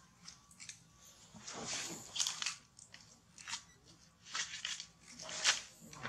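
A baby macaque biting and chewing on something crunchy: a few sharp, irregular crunches, the loudest about halfway through and near the end.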